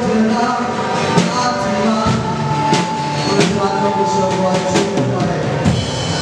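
Worship band music: a drum kit with cymbal hits over sustained chords.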